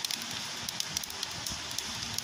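Open wood fire of sticks crackling, with scattered sharp pops over a steady hiss.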